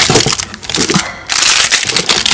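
Cardboard snack boxes and plastic packaging crinkling and rustling as they are handled and rummaged through, with a brief lull about a second in.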